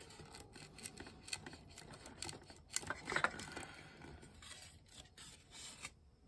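The steel point of an awl scratching along a thin wooden strip as it marks the wood: a run of small, faint scrapes and clicks, loudest about three seconds in.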